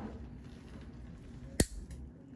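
A single sharp snap as a single-action nail nipper cuts through a great toenail, about one and a half seconds in.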